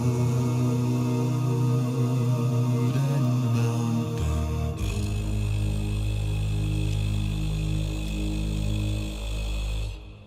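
A cappella male voices in close harmony holding long, slow chords. About five seconds in, a very deep bass voice drops to a low held note under the chord. The chord cuts off near the end.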